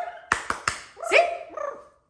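A few sharp clicks, then a short barking call that rises in pitch and fades.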